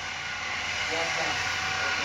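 Steady background hiss with a brief faint voice about half a second in.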